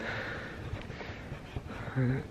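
Room tone in a large hall: a faint, steady hiss with a few small ticks, between a man's spoken phrases. A short bit of his voice comes at the very end.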